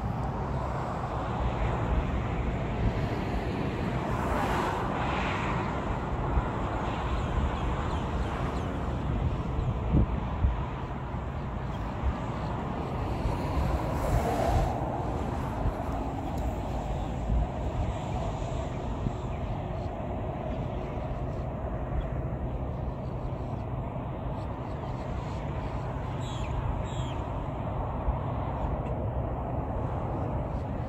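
Steady hum of road traffic in the background, with a low rumble and no clear single event.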